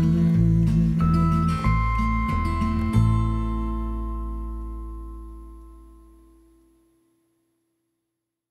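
Closing bars of a folk song on acoustic guitar: a few changing notes, then a last chord struck about three seconds in that rings and slowly fades away.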